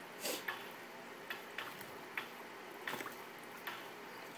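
Great Choice pet water fountain running: water trickling into the bowl, with irregular small drips and splashes every half second or so over a faint steady hiss.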